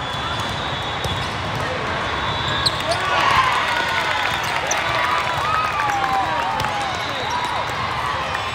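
Din of a large indoor volleyball hall: repeated sharp thuds of volleyballs being hit and bouncing on many courts, over a steady mix of players' and spectators' voices. From about three seconds in, drawn-out sliding squeaks of shoes on the court floor join in.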